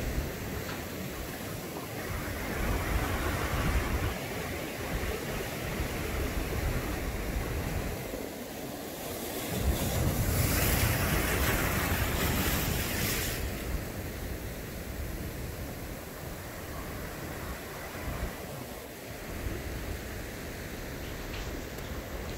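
Ocean surf: a steady rush of waves breaking and washing ashore, rising and falling in slow surges. The biggest surge swells up about ten seconds in and dies away a few seconds later.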